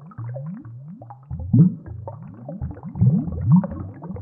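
Scuba diver's exhaled bubbles gurgling underwater from the regulator, in a run of short low bursts that each rise in pitch. The bursts are loudest about a second and a half in and again around three seconds in.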